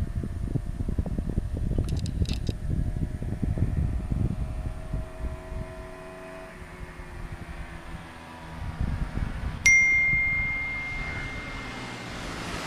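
Wind rumbling on the microphone, with faint motorcycle engines at full throttle in the distance, their note rising slightly as the bikes approach. About ten seconds in, a single bell-like ding rings out, the loudest sound, and fades away.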